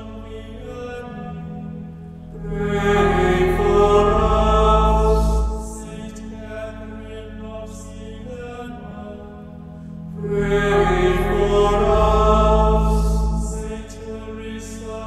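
Slow chanted singing over a sustained low drone, swelling into two long, louder phrases about eight seconds apart with quieter held passages between.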